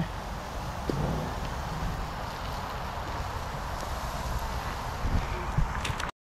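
Wind on the microphone: a steady low rumble under an even hiss, with one faint click about a second in.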